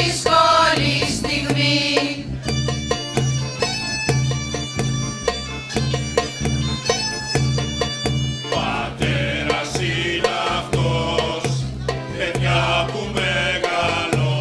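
Mixed choir singing over an accompaniment with a steady bass beat. The voices drop out for an instrumental passage of about six seconds, then come back in.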